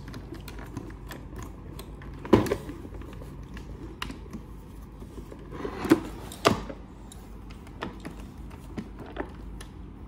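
Hard plastic clicks and knocks from a bagless vacuum cleaner's dust container being unlatched and pulled out by hand: one sharp click a little over two seconds in, two more around six seconds in, and lighter ticks between.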